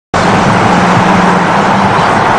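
A motor vehicle driving by, a loud, steady engine hum with road noise that starts abruptly just after the beginning.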